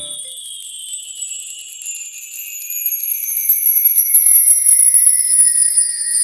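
A high, sparkling shimmer of tiny bell-like tinkles, slowly falling in pitch and swelling louder about two seconds in. It is a title-sequence sound effect over the closing logo animation.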